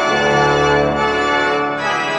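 Organ music: sustained chords, changing near the start and again near the end.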